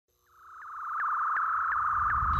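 Synthesized electronic sound effect of an animated title sequence: a steady high tone fades in from silence, with a short rising blip about three times a second.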